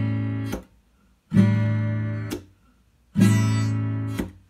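Acoustic guitar strummed one chord at a time by a beginning player. A ringing chord is cut off about half a second in, a new chord is strummed after a short silence and rings for about a second before being stopped, and a third is strummed near the end.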